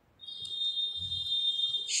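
A single steady high-pitched tone, like an electronic beep, starting a moment in and holding unchanged for nearly two seconds.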